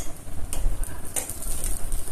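A steel ladle stirring thick pumpkin-and-bean curry in a stainless steel pot, with a couple of light clinks of the ladle against the pot.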